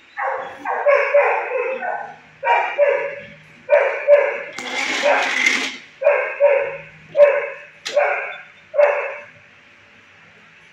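A dog barking: about a dozen barks in pairs and short runs, with a longer, harsher burst in the middle.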